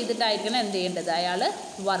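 A person's voice speaking, over a steady background hiss.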